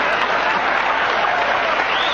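Studio audience applauding steadily after a punchline.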